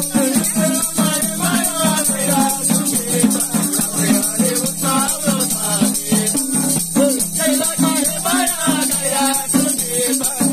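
A man singing a Nepali folk song while playing a madal hand drum in a quick, steady beat. A constant high hiss-like shimmer sits over the drum and voice.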